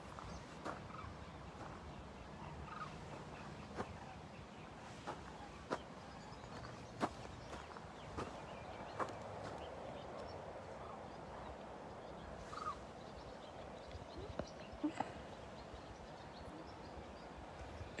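Faint footsteps on a gravel path, a short crunch about every second, over a low steady outdoor background.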